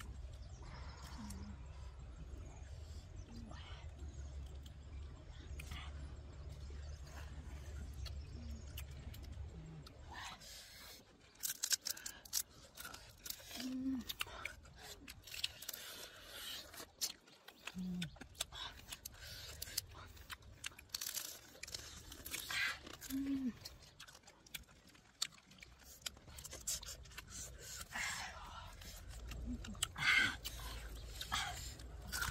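Cooked crabs being broken open by hand and eaten: sharp cracks and crunches of shell with close-up chewing, coming thick and irregular from about ten seconds in, after a stretch with only a low steady hum.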